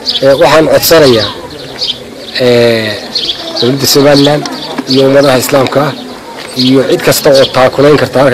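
A man speaking, in phrases broken by short pauses.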